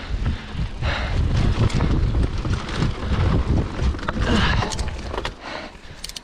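Giant Trance full-suspension mountain bike riding a dirt singletrack: knobby tyres rolling and the bike rattling and knocking over bumps, with wind buffeting the microphone. The rumble eases about five seconds in.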